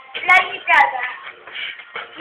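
Speech: a person's voice talking in short phrases, the words unclear.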